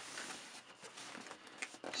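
Hands handling and shifting a cardboard box on a wooden desk: quiet scuffing with a few soft taps.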